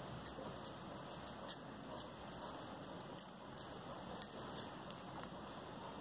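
Faint, irregular light clicks and ticks from a fine crochet hook and small gold beads as silk thread is crocheted onto a saree edge.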